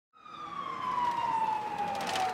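A siren wailing, fading in over the first second, its pitch sliding slowly and steadily downward.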